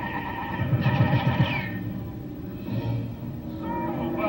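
Cartoon soundtrack music playing from the speaker of a restored 1954 RCA CT-100 colour television, heard in the room.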